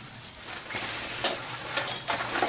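A silver fabric motorcycle cover rustling and swishing as it is dragged off the bike, growing louder about half a second in, with a few crackles of the stiff fabric.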